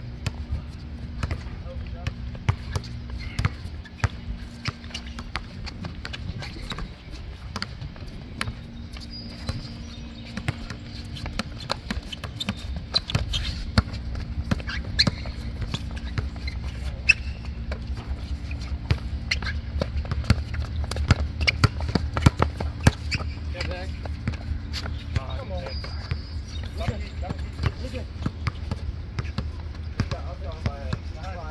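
A basketball bouncing on an outdoor concrete court during a pickup game, with sharp, irregular thuds throughout. Players' voices call out in the background.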